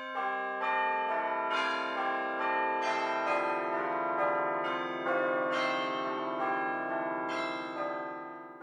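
Music of chiming bells under a title card: overlapping ringing tones, with a new note struck about twice a second, each left to ring on. The chiming starts to fade out near the end.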